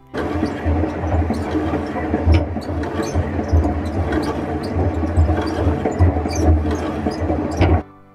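Hand-cranked rotary honey extractor spinning honey frames in its metal drum: a loud low rumble with rattling and clicks.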